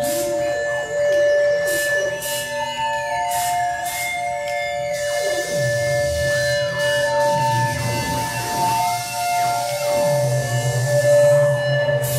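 Experimental electronic music from an object synthesizer: several sustained drone tones with wandering pitch glides over them and a few short clicks in the first seconds. A band of hiss comes in about five seconds in, and a low hum enters around six seconds and holds steady near the end.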